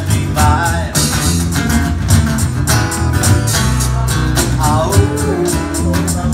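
Live blues played by a small band: acoustic-electric guitar strummed over a steady beat on an electronic drum kit.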